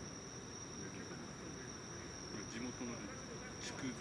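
Insects singing in the night air: a steady, high-pitched trill with faint voices beneath.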